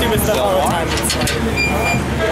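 People talking over a steady low rumble, with a brief thin high tone near the end.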